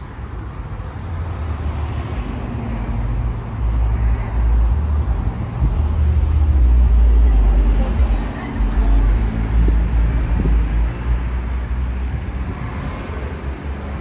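Street traffic: a low, steady rumble of vehicles on the road, swelling to its loudest about halfway through and easing off toward the end.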